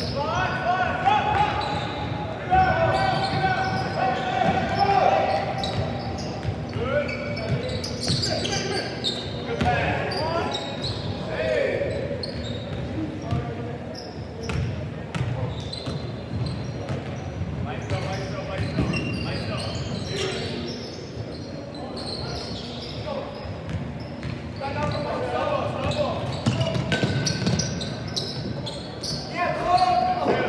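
A basketball bouncing on a hardwood gym floor in play, with players' voices calling out, echoing in a large hall.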